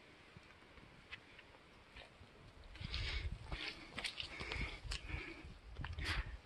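Heavy, breathy exhalations of a person scrambling up wet rock, with a few sharp scrapes and knocks and low rumbles on the microphone, starting about two and a half seconds in.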